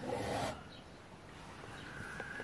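A brief rubbing, scraping noise for about half a second at the start, as equipment on the workbench is handled and moved, then only faint hiss.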